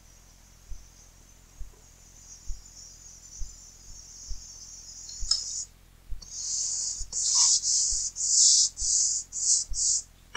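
Paintbrush bristles swishing against a painted wall in a run of about seven quick strokes starting around six seconds in, after a faint steady high hiss. Soft low thumps come about once a second throughout.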